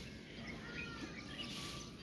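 Faint outdoor background noise with a few short bird chirps about a second in.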